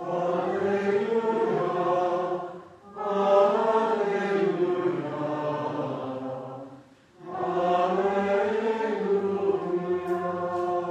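Church congregation and choir singing a chanted hymn without instruments, in three long phrases with short breath pauses about three and seven seconds in.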